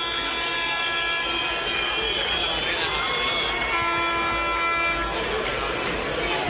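Stadium crowd noise with a fan's horn blowing one steady note. The horn stops about two seconds in, a higher wavering tone sounds briefly, and the horn sounds again for just over a second near the end.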